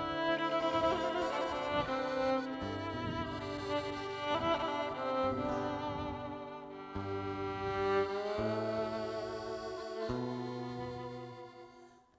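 Live Romani folk-dance music with a violin carrying the melody over guitar accompaniment and low bass notes, dying away in the last second.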